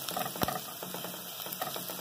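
Chopped garlic sizzling as it browns in a little oil in a nonstick pan: a steady crackle of small pops, with one sharper click about half a second in.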